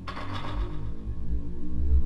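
Footsteps crunching and scraping on packed snow while walking, with a loud low rumble near the end.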